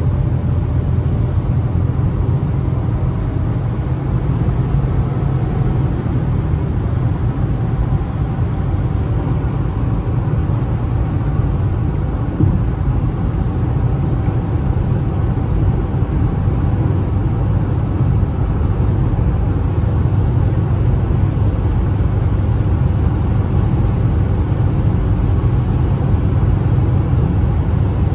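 Steady low engine and tyre noise inside the cabin of a Citroën C3 1.0 with a three-cylinder engine, cruising at highway speed of about 130 to 140 km/h.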